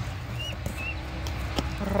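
Two short, high chirps from a small bird, over a steady low rumble, with a couple of faint clicks.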